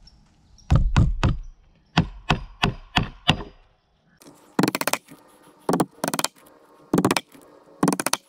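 Steel claw hammer driving nails into wooden boards: a run of single blows, about three a second, in the first half, then a few short groups of quick strikes.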